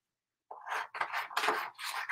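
Scissors cutting a sheet of sublimation paper in half: a quick run of several snips with paper rustling, starting about half a second in.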